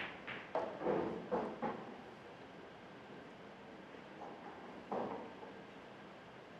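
Pool balls on a 9-ball table: a quick run of clicks and knocks in the first two seconds as the cue ball hits the object ball and the object ball drops into a pocket, then another knock about five seconds in as the cue ball meets a cushion.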